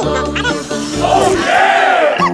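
Upbeat background music with a low pulsing beat, and from about halfway through a group of children shouting together.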